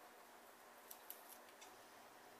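Four faint snips of scissors in quick succession about a second in, against near silence.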